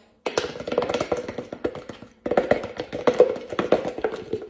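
A knife scraping and tapping rapidly around the inside of a nearly empty plastic peanut butter jar. It comes in two long bouts with a short break about two seconds in.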